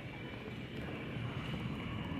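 Steady rumbling noise of a shopping cart rolling over a concrete warehouse floor, under the general background noise of a busy store.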